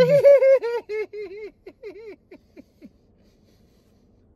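A man laughing hard in a high pitch: a run of short "ha" pulses, about four a second, that slow and fade out about three seconds in.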